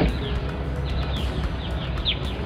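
Short, high bird chirps, each falling in pitch, coming in small groups about a second in and again near the end, over a steady low rumble.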